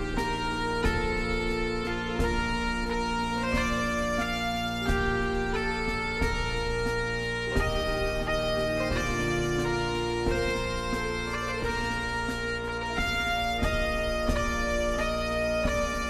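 Bagpipe music: a melody played over steady, unchanging drones, with a regular beat of percussive strokes underneath.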